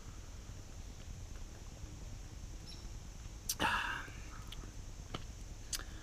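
Quiet mouth and breath sounds of a man savouring a sip of beer: a short breathy exhale about three and a half seconds in, and a few faint clicks of the lips and tongue, over a low steady background.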